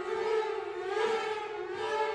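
Bowed string ensemble of violins and cello holding sustained notes whose pitches waver and slide slowly, giving a siren-like sound.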